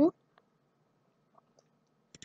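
Quiet room tone with a few faint, short clicks, about half a second in and twice more past the middle, right after a spoken word ends.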